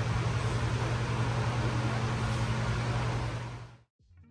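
Steady machine hum with an even rushing noise, like a fan or air handling running, fading out shortly before the end.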